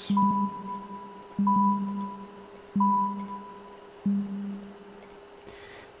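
Software-synthesised sine-tone 'bloops' (sine waves with an envelope) triggered in sequence by a periodic wavefront. There are four electronic beeps about 1.3 s apart, each starting suddenly and fading away. Each is a low tone, the first three with a higher tone above, over a steady sustained tone.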